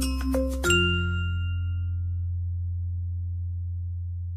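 Background music of ringing, chime-like notes over a low bass. Under a second in, the melody stops on a chord that rings away, leaving only a held low note.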